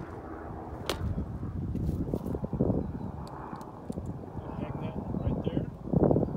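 A few short squirts of Lysol disinfectant spray on a pair of hand pruners to clean the blades, with a sharp click about a second in, over a low rumble.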